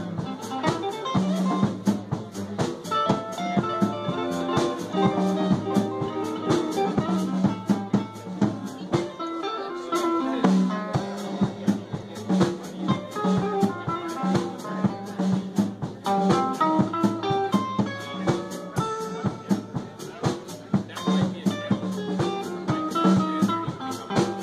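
Live band playing an instrumental Cajun-style passage: electric guitar over upright double bass and drum kit, with steady drum hits throughout. The bass drops out briefly near the middle.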